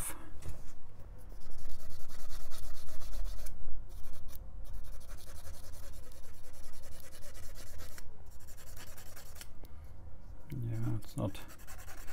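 Cotton swab rubbed rapidly back and forth along a VGA card's edge-connector contacts, scrubbing off their rough tarnish. The scrubbing is most vigorous from about one to four seconds in, then goes on more lightly.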